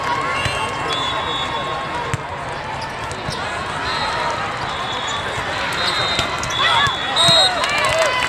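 Indoor volleyball hall during a rally: a haze of crowd chatter, the thud of the ball being played, and sneaker squeaks on the court that grow busier near the end. A short, shrill referee's whistle blast comes about seven seconds in.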